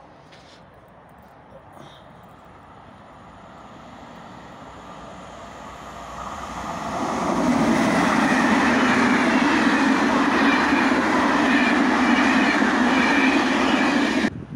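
A train approaching, its rumble building slowly for several seconds, then passing close by with a loud, steady rush of wheels on rails.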